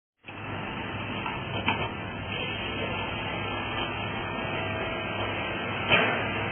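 Industrial plastic shredder and granulator, 40 hp, running and crushing car bumpers: a steady machine noise with a low hum, broken by a sharp crack of breaking plastic shortly before two seconds in and a louder one at the end.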